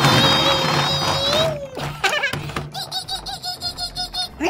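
A man's high, strained, held vocal note that keeps one pitch for about a second and a half while a toy school bus is pushed along a table, ending with a slight rise. A couple of clicks follow, then a quick run of short repeated pitched notes, about five a second.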